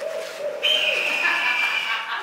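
A low wavering tone, then a shrill, steady whistle-like tone that starts about half a second in and holds for over a second.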